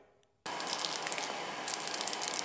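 Aerosol rattle can of chassis black primer hissing steadily as it sprays, starting suddenly about half a second in, with faint ticking.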